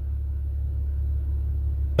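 A steady low rumble, with no distinct events in it.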